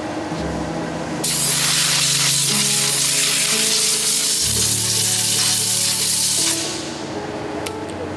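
A hose-fed trigger spray gun jetting onto a wire basket of steel chisel blanks: a loud, steady hiss that starts about a second in and tails off a little after six seconds.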